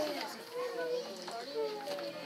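Quiet background talking from people in the hall, high-pitched like children's voices, in a lull of the amplified preaching.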